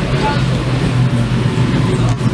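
Steady low drone of the M/V Kaleetan car ferry underway, its engines and machinery humming through the main passenger cabin, with passenger voices in the background.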